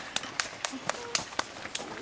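Footsteps of several people on a dry dirt trail: a quick, irregular series of scuffs and crunches as they step up a slope, with brief voice sounds in between.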